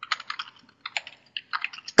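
Computer keyboard typing: a quick, irregular run of about a dozen keystrokes.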